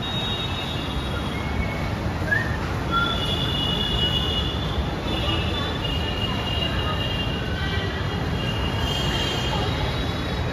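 Metro train running through the station, with a steady low rumble and a high, drawn-out wheel squeal that comes in more strongly about three seconds in.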